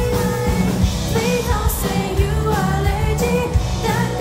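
Live rock band playing a J-pop rock song: a girl singing lead over two electric guitars, electric bass and a Yamaha drum kit keeping a steady beat.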